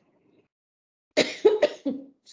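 A woman coughing, a short run of about three sharp coughs in quick succession starting about a second in.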